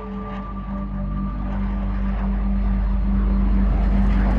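Jet aircraft flying overhead, its roar growing steadily louder over a low steady hum.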